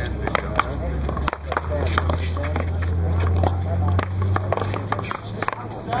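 One-wall paddleball rally: a dozen or so sharp smacks of the rubber ball off the paddles, the concrete wall and the court, coming at irregular intervals, over a steady low hum.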